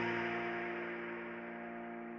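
The final chord of a piano instrumental backing track, held and slowly fading out.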